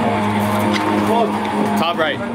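Spectators' voices calling out at a baseball game over a steady low hum that stops shortly before the end.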